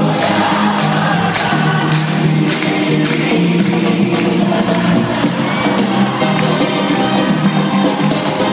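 Live band music played loud over an arena sound system, with sustained bass notes and steady percussion hits, and the crowd singing along and cheering, heard from high in the stands.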